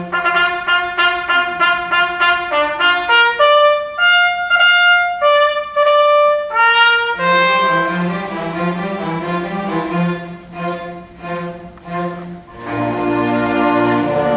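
A trumpet plays a fanfare-like call over sustained low brass chords: first a run of quick repeated notes, then rising held notes. Near the end the full orchestra with strings comes in.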